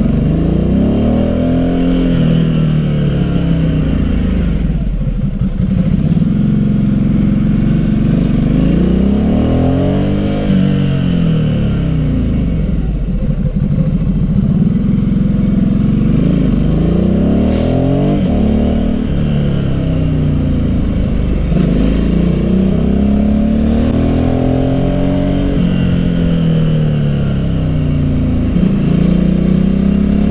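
Ducati Hypermotard's L-twin engine pulling the bike uphill, its pitch rising as it accelerates and falling as the throttle rolls off, over and over through the bends.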